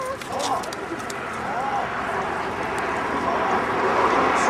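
Young children's high voices chattering, in short rising and falling calls during the first two seconds. A steady rushing noise then grows louder through the second half.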